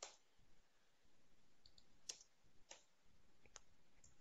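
Faint computer keyboard keystrokes: about five separate clicks spread unevenly over a few seconds, with near silence between them.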